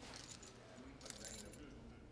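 A brass key on a plastic key tag jingling faintly in a hand, a few light metal ticks densest about a second in, over quiet room tone.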